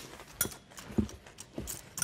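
A metal spoon clinking and knocking against a ceramic cereal bowl while someone eats, with three or so separate clinks a little over half a second apart.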